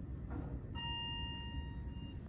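Elevator direction-lantern chime: one steady electronic beep lasting about a second, starting just under a second in. It sounds as the car's up arrow lights, signalling that the car is set to travel up.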